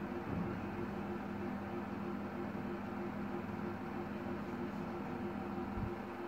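Steady machine hum with a few held low tones under a faint hiss: the room's background noise.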